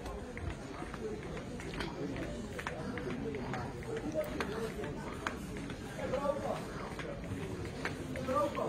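Indistinct chatter of many shoppers in a queue, with scattered sharp clicks and knocks.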